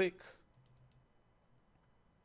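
A computer mouse double-clicked: a quick run of faint, sharp clicks about half a second in, as a formula is filled down a spreadsheet column.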